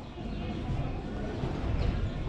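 City street ambience heard while walking along a sidewalk: indistinct voices of people nearby and footsteps over a steady low rumble.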